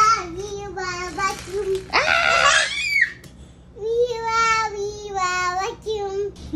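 A toddler singing in a high voice in long, held notes, with a louder, shriller squeal about two seconds in.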